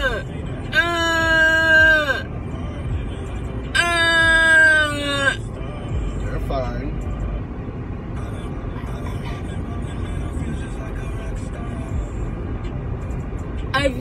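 A woman moaning after a wisdom tooth extraction: two long, drawn-out "uhh" wails in the first five seconds, each held about a second and a half and sagging in pitch at the end. After them only the steady road rumble inside a moving car.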